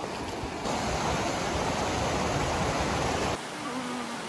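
Rushing creek water tumbling over rocks, a steady full hiss that turns thinner and lighter a little over three seconds in.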